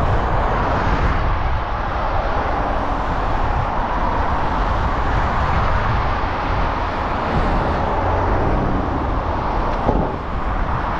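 Wind rushing and buffeting over a bike-mounted camera's microphone while riding in a strong, gusty wind, with steady road noise underneath. A brief tap sounds near the end.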